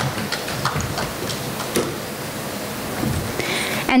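An audience applauding: a steady patter of many hands clapping.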